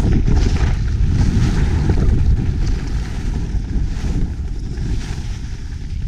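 Wind buffeting a GoPro's microphone while skiing downhill: a heavy, steady low rumble, with the hiss of skis sliding over snow above it.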